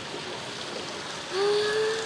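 Hot-spring water flowing steadily, then about a second and a half in a woman's long, drawn-out 'aah' of relaxation on one held pitch.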